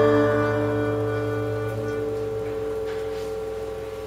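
The live band's closing chord ringing out: several held notes sustain steadily and fade slowly, with no new notes played.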